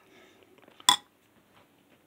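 A single short, sharp clink of a utensil against a ceramic bowl, about a second in.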